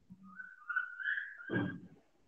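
Someone whistling a short, wavering phrase that rises and falls over about a second and a half. A lower, hum-like sound joins briefly near the end.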